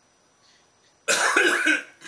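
A man's short, loud cough about a second in, lasting under a second.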